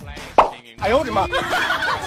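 A single sharp pop about half a second in, then a voice with swooping, sliding pitch.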